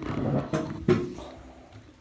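Rustling and handling noise from the cardboard shoebox run and its paper-towel lining, with two sharp knocks about half a second apart in the first second, the second one louder, then fading away.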